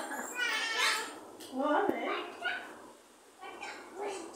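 Small children's voices, short calls and squeals as they play, with a single sharp knock about two seconds in.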